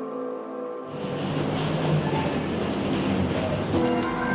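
Music with held tones, overtaken about a second in by a steady rushing noise of jet airliner engines, which lasts about three seconds before the music comes back near the end.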